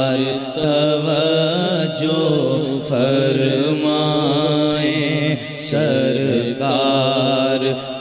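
Men's voices singing an Urdu naat together, in long, wavering, drawn-out sung phrases with no spoken words.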